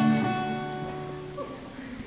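Acoustic guitar chord strummed once and left to ring, fading out over about a second and a half.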